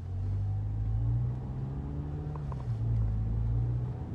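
A car's engine accelerating as the car pulls away from a stop, heard from inside the cabin: a low engine hum that swells at the start and rises in pitch, dipping once about three seconds in.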